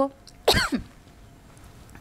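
A woman coughs once, a single short cough about half a second in, followed by quiet room tone.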